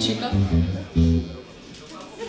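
Electric guitar and bass guitar playing a few short, low notes, a riff that stops about one and a half seconds in and leaves a quieter stretch.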